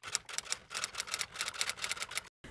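Typing sound effect: a rapid run of key clicks, about ten a second, laid over on-screen text typing out letter by letter.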